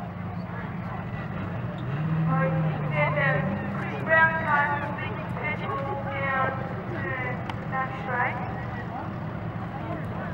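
Speedway car engines running steadily, one pitching up briefly about two seconds in, under the voices of spectators talking.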